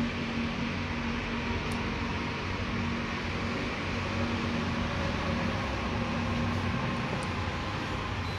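Steady hum of a small car's engine idling, with a faint tick about two seconds in and another near the end.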